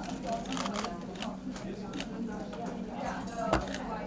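Indistinct chatter of several people in a busy room, with many sharp clicks scattered through it and one louder knock about three and a half seconds in.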